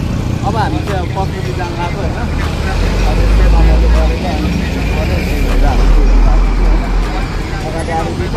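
Road traffic on a busy street: vehicle engines, including a large bus, passing close by with two deep rumbles swelling about three and six seconds in, over faint voices.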